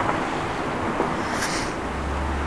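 Steady outdoor background noise, with a brief rustle about a second and a half in and a low rumble starting near the end.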